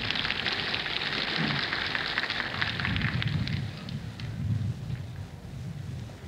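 A large audience applauding, the clapping thinning and dying away about four seconds in. It is heard on an old live recording with a narrow, dull top end.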